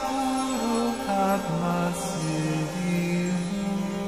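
Devotional mantra music: a voice chanting in slow held notes that step downward in pitch, over a steady drone.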